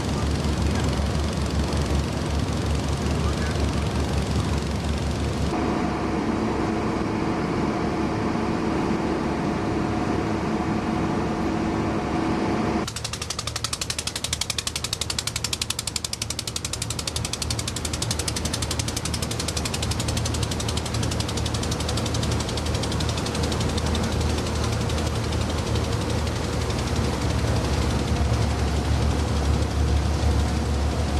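Motor boat engines on canal cargo barges chugging with a fast, steady low beat. From about five to thirteen seconds in, a steady humming tone rides over the beat.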